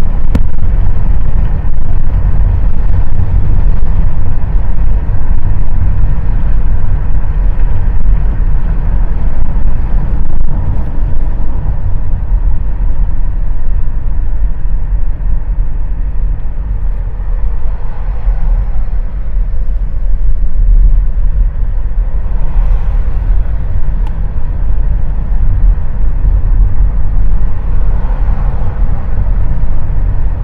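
Steady low rumble of a car driving at speed on a paved road, road and drive noise picked up from inside the moving car.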